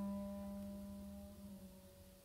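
Orchestra holding a soft sustained chord that fades away; its lowest note is the loudest.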